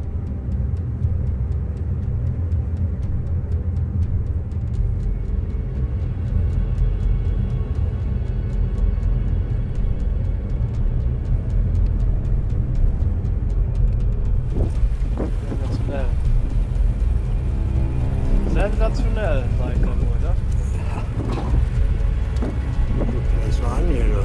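Loud, steady low rumble of strong wind buffeting the microphone over choppy open water. About halfway through the sound changes and voices call out over the wind.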